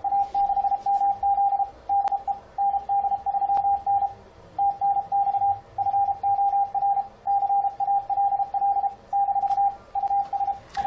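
Morse code (CW) sent by FLDigi through an ICOM IC-7300: one steady beep keyed in dots and dashes at machine-even speed. It spells out the reply "AA6MZ DE ND3N TNX FOR CALL U…", the start of a signal report of 589.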